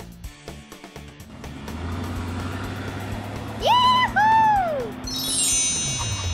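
Cartoon sound effects: a low, steady engine-like hum builds up, two swooping whistle-like tones come about two thirds of the way in, and a descending sparkly chime run follows near the end.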